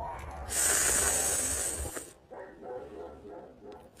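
A person taking a long slurping sip of a drink from a mug: a hissing rush that starts about half a second in and lasts about a second and a half, followed by faint small sounds.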